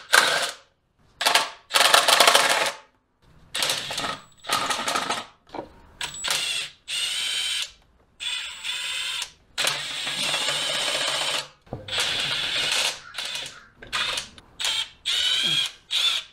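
Ratchet wrench working the oil pan bolts loose, in a series of short mechanical bursts with brief pauses between them.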